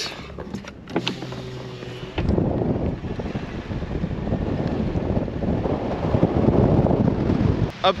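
Subaru car driving slowly over a rough desert dirt track, with a low steady engine hum. From about two seconds in, wind rushes over the microphone held out the open window, together with tyre noise from the dirt, growing slightly louder toward the end.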